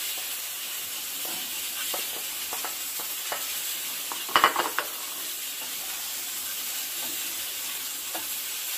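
Diced calabresa sausage and bacon sizzling as they fry in oil in a frying pan, a steady hiss with a few light knocks of the spoon. A brief louder clatter comes a little past the middle.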